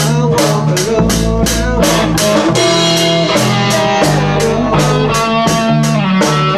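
A rock band playing live: electric guitar, bass guitar and a drum kit keeping a steady beat of about four strikes a second.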